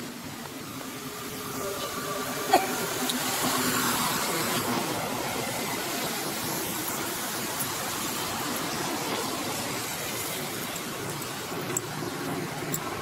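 Steady rushing hiss of outdoor background noise, with one sharp click about two and a half seconds in.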